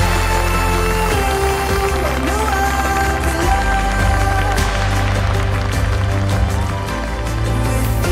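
Background music: a song with a steady bass line and a held, gliding melody.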